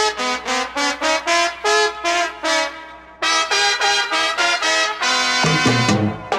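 Salsa horn section of trumpets and trombones playing an instrumental break: a run of short staccato stabs, then one long held chord. The bass and rhythm section come back in near the end.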